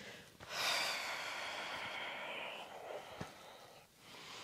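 A woman's long, audible breath out: it starts about half a second in and fades away by about three seconds. It is taken while she swings and twists from side to side.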